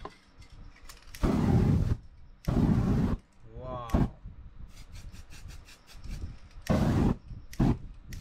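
Aerosol spray-paint can let off in three short hissing bursts, each under a second, the second and third a few seconds apart. Flames are flared over the wet painting, with a couple of sharp clicks between the bursts.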